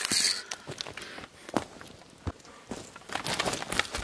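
Footsteps close to the microphone on a forest floor of dry conifer needles and twigs, with small twigs crackling and snapping underfoot in uneven steps, busiest near the end.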